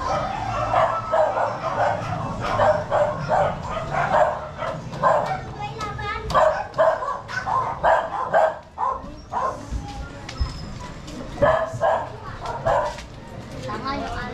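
A dog barking repeatedly in quick succession, about three barks a second, pausing briefly before starting again, with people's voices around it.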